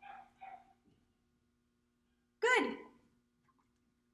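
A woman's voice says the dog-training marker word "good" once, sharply and with a falling pitch, about two and a half seconds in. A faint, steady low hum sits underneath throughout.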